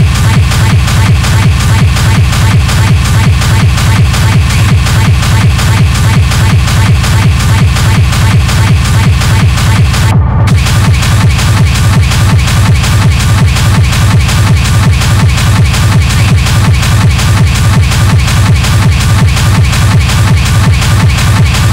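Schranz hard techno DJ mix, loud, with a fast, steady kick drum on every beat under dense, driving percussion. About ten seconds in, the top end cuts out for a moment while the kick keeps pounding.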